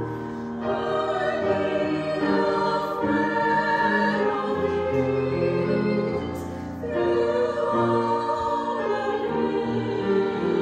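Small mixed vocal group of three women and one man singing an English hymn with piano accompaniment, in long held notes, with a brief break between phrases a little past halfway.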